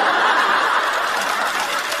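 Theatre audience laughing at a punchline, loudest at the start and slowly tapering off.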